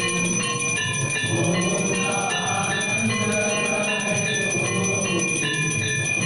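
Temple bells ringing continuously for the aarti: many strikes clang together over a steady high ringing that holds throughout.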